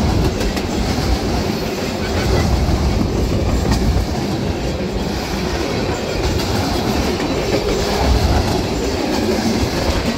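Empty centerbeam flatcars of a freight train rolling past close by: a steady rumble of steel wheels on rail with clickety-clack over the joints and the rattling of the empty cars.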